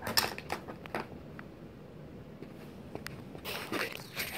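A few light clicks and taps from a small plastic tape measure being set down and let go on a wooden table, then quiet room tone with a brief rustle near the end.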